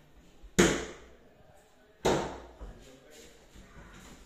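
Overhead lift-up flap door of a built-in wooden wardrobe knocking against the cabinet frame as it is swung: two sharp knocks, about half a second in and again about two seconds in, each dying away quickly.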